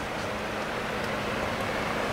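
Steady hiss of rain falling, with a faint low hum and a few faint ticks.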